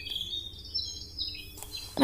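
Birds chirping: short, high-pitched chirps and calls, several overlapping, at a low level.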